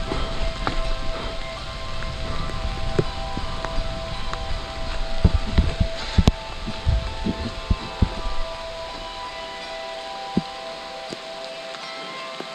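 Mountain bike rolling down a wet dirt singletrack: tyre rumble and wind on the microphone, with a run of sharp knocks and rattles over rocks and roots in the middle, and the rumble dropping away near the end as the bike slows. A steady ringing tone runs underneath.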